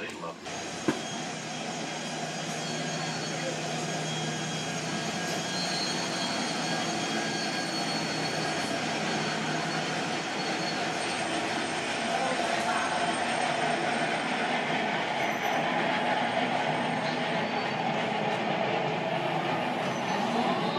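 Steady rumbling drone of a steamship's machinery heard inside the ship, with a few held humming tones, slowly growing louder. A single sharp knock about a second in.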